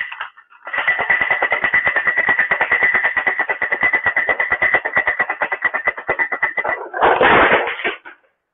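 Ice rattling hard inside a metal cocktail shaker tin shaken vigorously: a rapid, even stream of clattering strikes with a ringing metallic tone. A louder clatter comes about seven seconds in, as the shake goes wrong.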